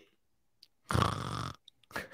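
A person laughing: one short burst of laughter about a second in, lasting just over half a second.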